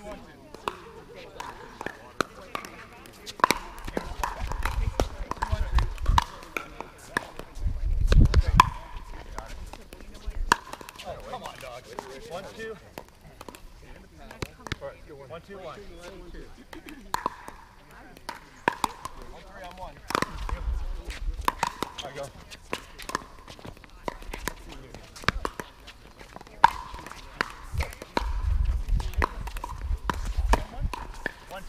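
Pickleball paddles hitting a hard plastic ball in a doubles rally: a string of sharp, hollow pocks coming in quick exchanges, with pauses between points. Short bursts of low rumble come in a few times.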